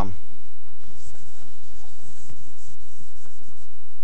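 Chalk writing on a blackboard: a series of short scratching strokes as the chalk is drawn across the board.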